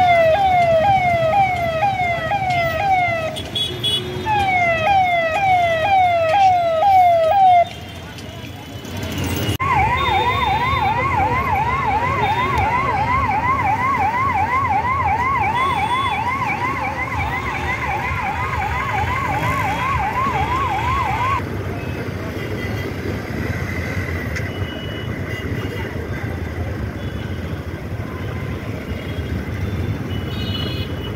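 Electronic vehicle siren sounding in heavy traffic: first a falling tone repeated about twice a second, then, after a short break, a quick rising-and-falling warble for about twelve seconds before it stops. Engine and street noise run underneath throughout.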